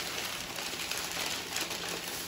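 Thin plastic shopping bag rustling and crinkling as hands rummage inside it.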